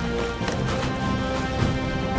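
Film score music with sustained held notes, with a few light, sharp knocks in an uneven rhythm.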